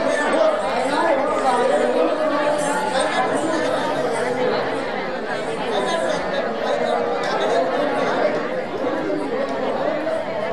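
Many voices talking at once in a steady chatter, with no single voice standing out.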